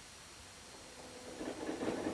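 Steady hiss of an old optical film soundtrack. About halfway through, it rises slightly and a faint low steady tone comes in.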